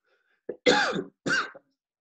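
A man coughing and clearing his throat in three short bursts, the second and third loudest.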